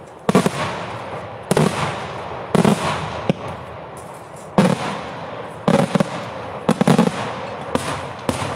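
Daytime fireworks: a run of loud aerial shell bursts at uneven intervals, roughly one a second, some in quick pairs, with a rumbling crackle between them.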